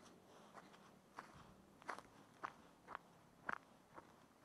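Faint footsteps on dry grass and garden soil, about two steps a second, clearer from about a second in.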